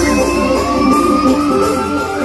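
Live keyboard band music: a single held synthesizer lead note bends slowly upward over a steady, repeating rhythmic backing.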